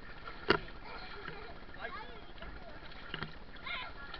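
Swimming-pool water lapping and sloshing close to a camera at water level, with children's high voices calling out briefly. A sharp knock close to the microphone about half a second in is the loudest sound.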